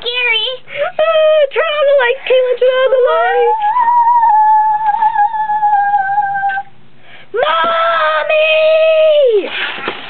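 A child's voice singing wordless, drawn-out notes as a mock scary noise. It opens with a few short wavering syllables, then glides up into a long held note. After a short pause comes a second long, lower held note.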